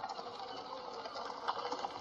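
Faint background ambience with scattered light ticks and a small knock about one and a half seconds in.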